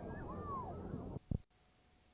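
Voices and background din on a home videotape end with a low thump about a second and a half in, as the recording cuts off. Then only faint tape hiss with a thin steady tone is left.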